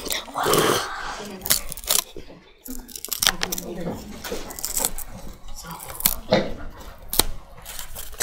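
A small sheet of paper being handled and pulled on a homemade paper-and-rubber-band cutter: irregular rustling and crinkling with several sharp clicks and snaps.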